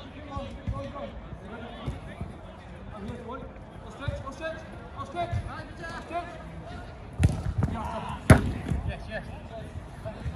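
Players' voices calling across a five-a-side football pitch, with a few sharp thuds of the football being struck late on, the loudest just after eight seconds in.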